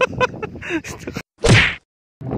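Scattered sharp knocks and rustling for about a second. The audio then cuts out and a short, loud whoosh sound effect sweeps downward: an editing transition into a channel logo sting.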